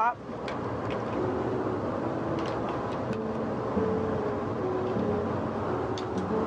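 Steady kitchen background noise, a constant even roar. From about a second in, soft background music of slow, held notes plays over it.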